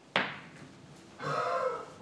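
A single sharp click of a pool shot, cue and balls striking, just after the start, followed by a short laugh.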